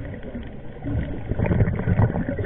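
A scuba diver's exhaled breath bubbling out of the regulator, heard underwater through the camera housing as a muffled, gurgling rumble that swells about a second in.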